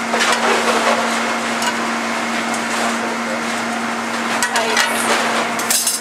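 Commercial kitchen noise: the steady hum and rush of the ventilation and stoves, with metal tongs clinking against a pan and bowl a few times, mostly near the end.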